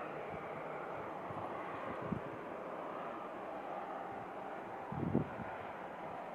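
Distant Embraer E190 turbofan engines running at taxi power, a steady hissing rush. Two brief low thumps stand out, about two seconds in and about five seconds in.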